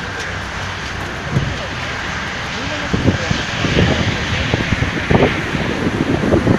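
A motor running steadily, growing somewhat louder about halfway through, with frequent low thumps and knocks from handling nearby and indistinct voices in the background.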